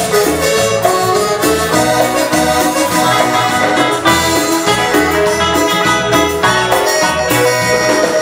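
Live Latin dance band playing an instrumental passage: congas, drum kit and hand percussion over a steady, repeating bass line, with keyboard, electric guitar and saxophone.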